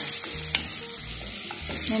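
Chopped onions sizzling as they fry in oil in an earthenware pot, stirred with a wooden spoon that gives a few sharp clicks against the pot.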